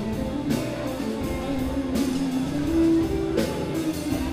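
Live rock band playing an instrumental passage without vocals: electric guitars and bass over a drum kit with regular cymbal hits. One note is held loudest for about half a second near three seconds in.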